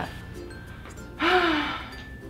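A woman's loud, breathy voiced sigh, about half a second long with its pitch rising then falling, about a second in, over soft background music.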